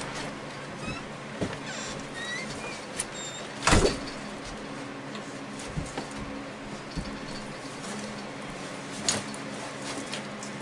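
A door opening with some thin squeaks, then banging shut about four seconds in, followed by scattered light knocks and clothing rustle as an armload of hunting gear is set down, over a steady low hum.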